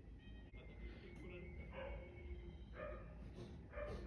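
Faint soundtrack of an anime episode: short cries from the characters' voices, about two seconds in, again around three seconds and just before the end, over quiet background sound.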